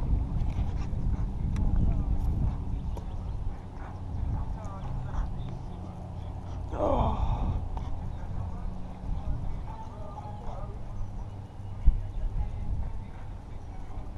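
Steady low rumble of wind and handling noise on a body-worn camera's microphone. About seven seconds in comes one drawn-out exclamation from a man, falling in pitch, and near the end a single sharp knock.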